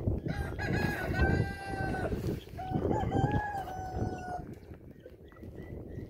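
Two long, drawn-out crowing calls from farm poultry, one after the other, each held on a steady high note for about two seconds.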